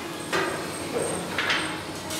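Background noise of a butcher's workroom: low room noise with a faint steady high whine and two soft, brief brushing or handling noises.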